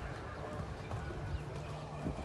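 Faint, muffled hoofbeats of a warmblood mare cantering on sand arena footing as she jumps a fence.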